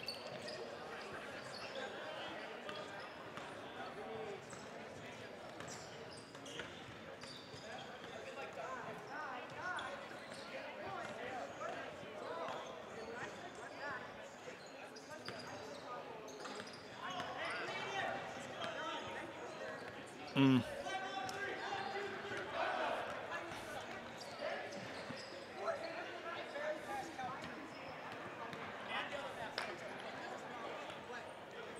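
Distant voices of players chatting in a large, echoing gym, with rubber dodgeballs now and then bouncing on the hardwood floor. One brief louder pitched sound comes about two-thirds of the way through.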